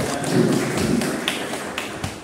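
A small group of people clapping by hand, a short round of applause made of many quick, overlapping claps.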